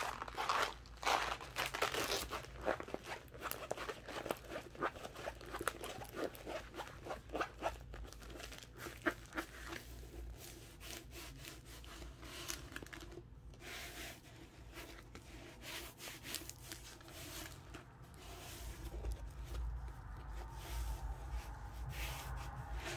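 A rolled diamond-painting canvas, paper with a plastic cover film, being handled and rolled back on itself to flatten it: crinkling and rustling, busiest in the first half and sparser later.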